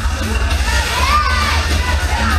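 A crowd of spectators shouting and cheering, with music playing underneath.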